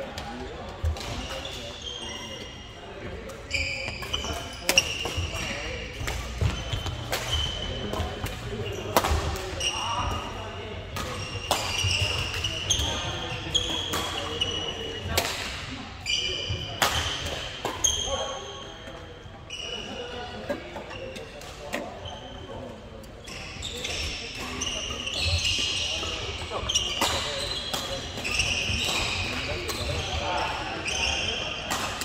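Badminton rallies on a wooden hall floor: sharp clicks of rackets striking shuttlecocks, many short high-pitched sneaker squeaks as players stop and turn, and indistinct voices from the courts.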